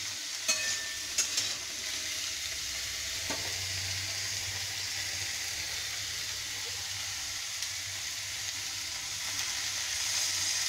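Chopped vegetables sizzling steadily in hot oil in a metal kadai, with a couple of sharp spatula knocks against the pan in the first second or so.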